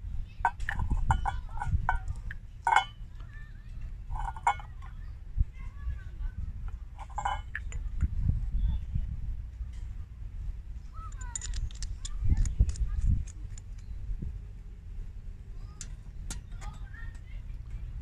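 Small metal parts of an antique brass spirit stove clinking and clicking as they are handled, screwed and set down, in several short clusters over a steady low rumble.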